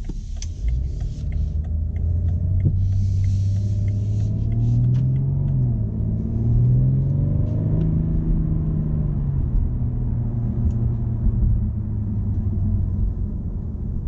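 BMW M550d's 3.0-litre quad-turbo inline-six diesel heard from inside the cabin as the car pulls away: the engine note rises, drops at a gear change about five seconds in, rises again, then settles to a steady cruising rumble with road noise. A few light clicks in the first seconds.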